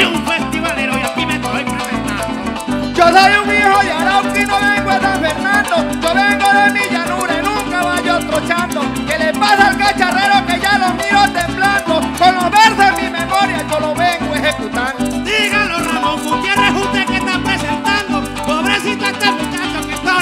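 Live llanero joropo band playing an instrumental passage between the copleros' improvised sung verses: fast plucked harp runs over a steady rhythm with maracas.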